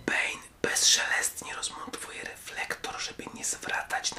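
A man speaking in a whisper.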